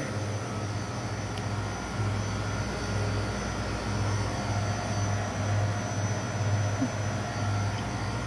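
Refrigeration units of glass-door freezer cases running with a steady, noisy low hum, with a few faint steady higher tones over it.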